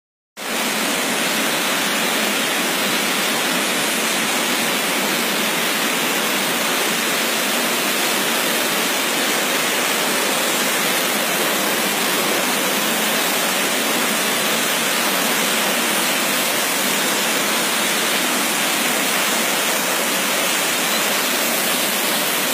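Waterfall pouring down a rock face into a rocky stream: a loud, steady rush of water with no breaks, cutting in just after the start.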